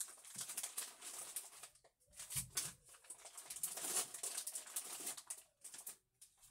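Irregular rustling and crinkling of plastic bags being handled and rummaged through, with quick light clicks and a couple of brief pauses.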